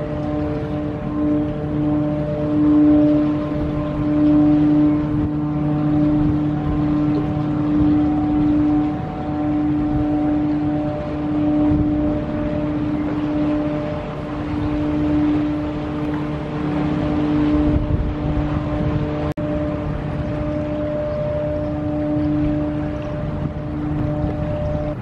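Steady hum of a cargo ship's diesel machinery at close range, swelling and fading a little, with wind rumbling on the microphone.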